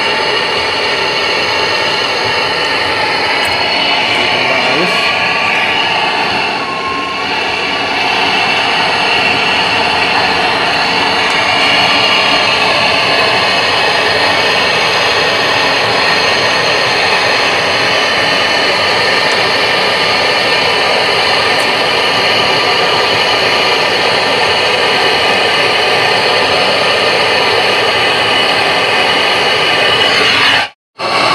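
Handheld gas torch burning with a loud, steady hiss as a copper refrigerant pipe joint is brazed to seal a leak.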